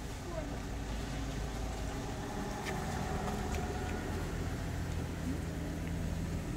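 Steady low rumble of an idling vehicle engine, with a few faint clicks over it.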